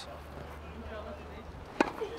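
A tennis racket striking the ball on a serve: one sharp crack near the end.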